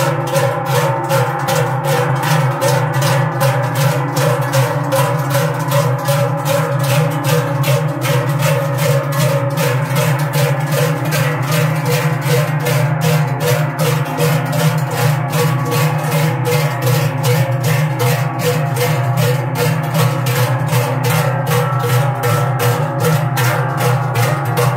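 Large sheet-metal Swiss cowbells (Treicheln), carried on shoulder yokes by a line of men walking in step, swung in unison so that they clang together in a steady rhythm with a lingering ring.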